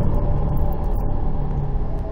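A low, steady rumble that slowly fades, with a faint held tone above it.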